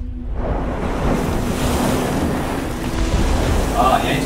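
Film-trailer sound design of surging ocean waves and wind, with a low held tone under it. It swells in over the first half second and then holds.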